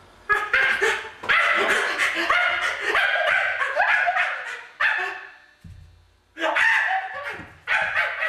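A man's voice giving loud, bark-like animal cries over and over, in quick yelping runs with a short break about six seconds in.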